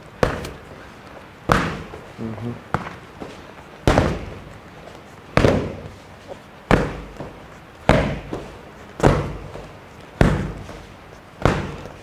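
Boxing-gloved punches landing on a trainer's padded focus mitts: about ten sharp pad smacks, roughly one every second and a bit, each with a short echo.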